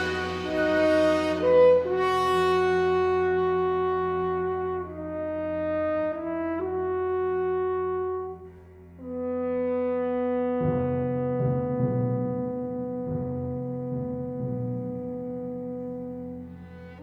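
Orchestral passage without voice: sustained brass chords, with French horn most prominent, moving to a new chord every couple of seconds. After about ten seconds, deeper instruments come in beneath a long held chord.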